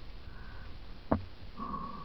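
Mountain bike rolling over a wooded dirt trail, heard from the moving camera: a steady low rumble, a sharp knock about a second in, and a short high squeak near the end.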